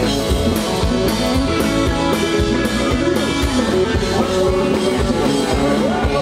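Live band playing an instrumental passage: electric guitar over a steady drum-kit beat.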